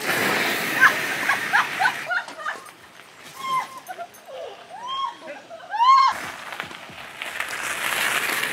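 Bicycle tyres crunching over a gravel path as a bike rides away close by, then voices calling out and whooping from further off, the loudest call a rising-and-falling shout about six seconds in. The gravel crunch returns near the end as another bike passes close.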